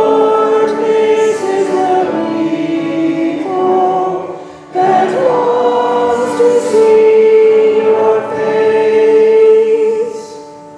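A cantor and congregation singing the responsorial psalm refrain together in two long, held phrases, with a brief pause for breath about halfway through.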